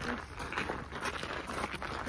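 Footsteps crunching on a gravel path, an irregular run of small steps.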